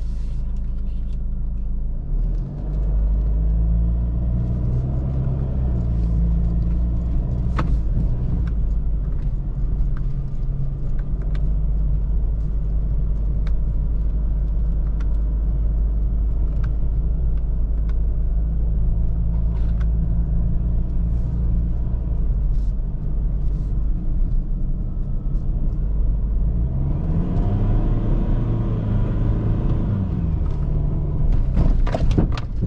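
Ford Ranger's 2.2 four-cylinder turbodiesel heard from inside the cab while driving on a rough dirt road: a steady low rumble whose engine note climbs and falls a few times, rising again near the end as it picks up speed. Short sharp knocks and rattles come through over the bumps.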